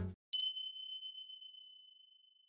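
A single bright chime sound effect, one ding that strikes about a third of a second in and rings down until it fades out. Background music stops just before it.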